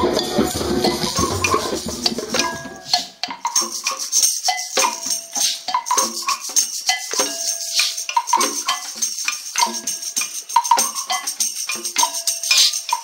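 Hand-drum and shaker percussion playing a fast, steady rhythm. A dense, low passage gives way about three seconds in to lighter, crisper strikes with short pitched notes and a constant shaker rattle.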